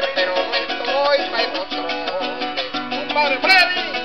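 Venezuelan llanero music: a llanera harp and a cuatro playing together in a quick plucked rhythm, with a short bright rising sound about three and a half seconds in.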